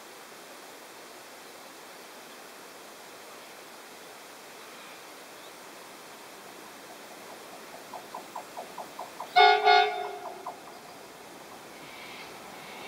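Horn of an NR-class diesel-electric freight locomotive, a loud multi-note chord sounded in two quick blasts about nine and a half seconds in, preceded and followed by a quick run of short faint pulses, about four a second.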